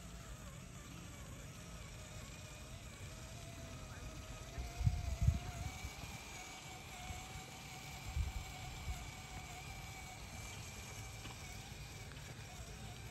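Axial SCX10 III Early Bronco RC crawler's stock brushed motor and gearbox whining at crawl speed, the pitch wavering and creeping up with the throttle. A few low thumps come about five and eight seconds in.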